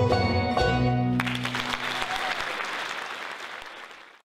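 A bluegrass band of mandolin, banjo, guitar and upright bass rings out its final chord, cut off about a second in; applause from the audience follows and fades out near the end.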